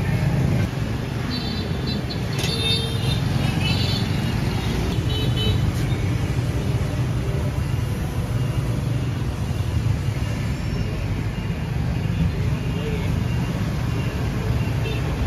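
Steady low rumble of street traffic, with faint voices in the first few seconds.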